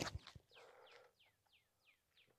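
A sharp thump as a disc golf drive is thrown, with a second, weaker knock just after. Then a bird gives a run of short chirps that fall in pitch, about four a second.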